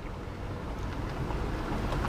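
Car interior noise: a steady low rumble with a hiss over it, getting gradually louder.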